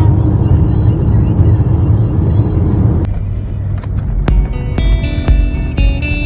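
Steady low road noise from a car driving on a highway for about three seconds. It then drops away, and background music with separate, ringing notes starts about four seconds in.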